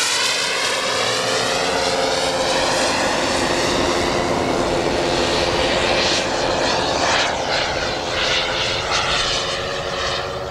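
Giant-scale Hawker Hunter RC model jet's turbine running loud as the jet flies past, with a phasing whoosh at first. From about six seconds in, the jet noise swells in several short gusts as the plane banks overhead.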